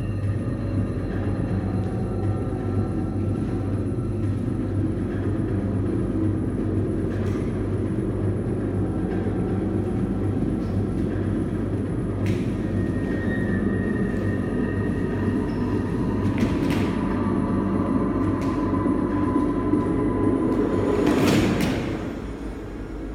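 Sound effect of a moving train played through speakers: a steady running noise with a few sharp clacks, swelling louder near the end and then dropping off.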